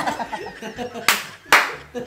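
Two loud hand claps about half a second apart, over people laughing.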